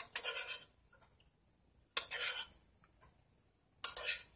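A metal utensil scraping around the inside of a stainless steel saucepan, stirring pasta into thick clam chowder: three short scraping strokes about two seconds apart.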